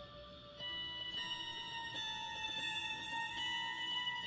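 Live band playing a soft, sparse passage of long held notes. The notes step to new pitches several times, and the sound grows a little fuller about half a second in as new notes come in.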